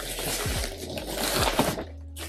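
Plastic mailer bag and cardboard box rustling and crinkling as the packaging is pulled open by hand, with a few low dull thuds.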